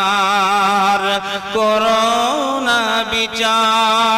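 Slow melodic chanting with a wavering, drawn-out pitch over a steady low drone; the melody moves to a new pitch about a second and a half in.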